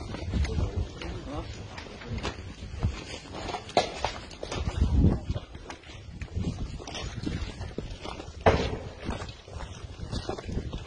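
Footsteps of someone walking over rubble-strewn ground, an uneven series of scuffs and knocks with low rumbles, and one sharp crack about eight and a half seconds in.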